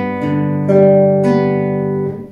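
Nylon-string classical guitar fingerpicked as a slow arpeggio of a G chord, four notes plucked one after another and left to ring together.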